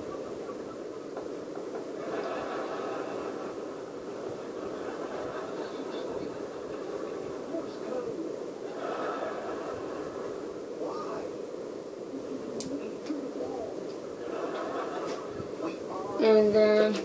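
A steady low hum of machine or room noise, with faint, muffled voices in the background now and then.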